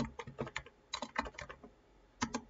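Computer keyboard typing: a quick, uneven run of keystrokes that stops about a second and a half in.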